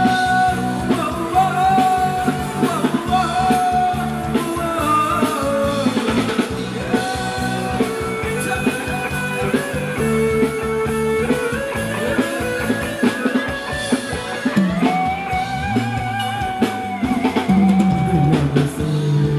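Live band playing Thai ramwong dance music: a sung melody with held, gliding notes over drum kit and guitar, keeping a steady dance beat throughout.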